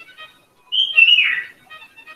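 Faint background music of light plinking notes. Near the middle comes a loud, short whistle-like call that starts high and slides down in pitch.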